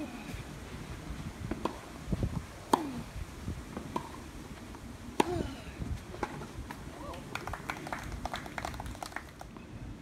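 Tennis rally: the racket strikes the ball with a sharp pop every second or so, about five hits, the loudest near the middle of the rally. Some hits carry a short falling grunt from the player. Then comes a patter of light claps from a small crowd as the point ends.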